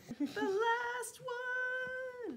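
A woman's voice singing softly, two long held notes, the first wavering slightly, the second steady until it falls away near the end.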